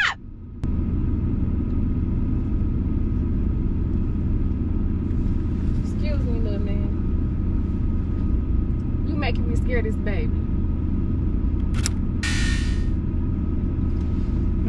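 Road noise inside a moving car's cabin: the steady low rumble of engine and tyres. Quiet voices come in briefly about six seconds in and again around nine to ten seconds, and there is a short hiss near the end.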